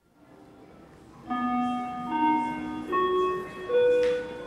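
A short musical jingle after a radio host's hand-off: a quiet first second, then a run of held notes, each sustained for most of a second and stepping upward in pitch about four times.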